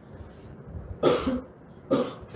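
A man coughs into a handheld microphone about a second in, with a second short cough-like sound near the end.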